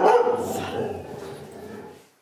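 Mixed-breed dog barking at a stranger coming in the door, his rowdy reaction to the newcomer. A loud bark right at the start fades away over the next two seconds.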